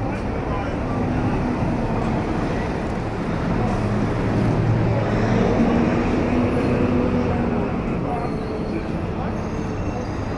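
Busy city street traffic with passers-by talking, and a bus engine that swells as it passes about halfway through, then fades.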